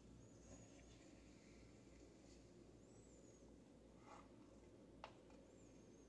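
Near silence: low room hum, with a few faint, thin high squeaks and one light click about five seconds in.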